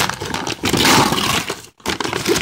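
Paper gift wrapping being torn and crumpled by hand, a busy rustling and ripping that stops briefly near the end.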